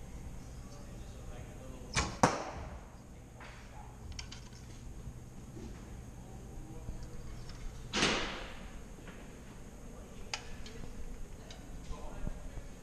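Two shots from a youth recurve bow: about two seconds in, the released string gives a sharp snap, followed a quarter second later by a second snap from the arrow striking the target; another shot lands with a sharp snap about eight seconds in.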